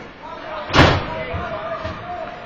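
A single loud bang about a second in, a hard impact against the rink's boards and glass during ice hockey play, ringing briefly in the arena, with players' voices calling out.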